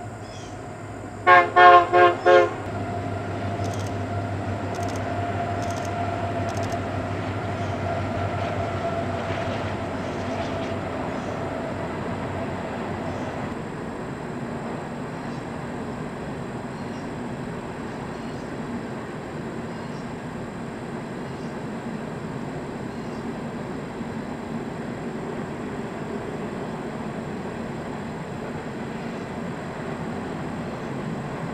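Union Pacific diesel freight locomotives sounding four short, quick horn blasts about a second in, then the steady rumble of the train rolling across the steel trestle. A faint whine under the rumble fades out around the middle.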